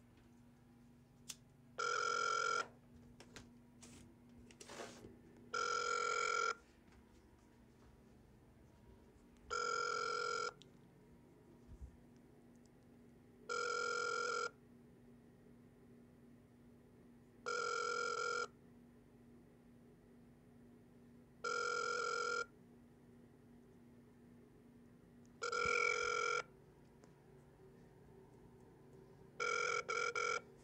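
Ringback tone of an outgoing phone call, played through the phone's speakerphone: short rings of just under a second, repeating about every four seconds while the call goes unanswered.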